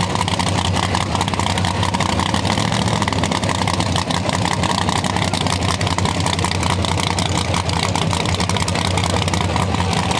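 Drag race car's engine idling loudly and steadily, without revving.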